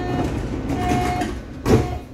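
Sliding passenger doors of a Berlin U-Bahn H01 train closing, with a mechanical rumble and a short high tone sounding twice. The doors end in one loud thump as the leaves meet near the end.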